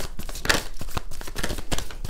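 Tarot cards being shuffled by hand: a quick, irregular run of soft papery flicks and taps.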